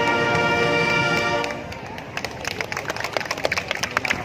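Youth marching band's brass section holding a loud final chord that cuts off about a second and a half in, followed by scattered crowd clapping and cheering.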